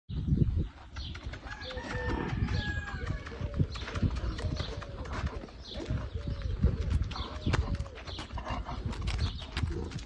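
Footsteps and a horse's hooves on packed dirt, with irregular low thumps and short bird calls repeating throughout.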